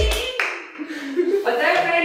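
Several people clapping their hands, with voices calling out. A backing song cuts off just after the start.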